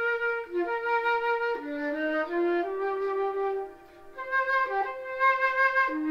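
Solo transverse flute playing a slow melody of single held notes that step up and down in pitch, with a brief break about two-thirds of the way through.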